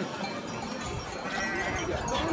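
Sheep bleating about a second in, with the clank of sheep bells, amid a crowd.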